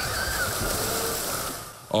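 Swimming-pool ambience: water splashing as children come off a water slide into the pool, with faint shouts and chatter of bathers. It cuts off shortly before the end.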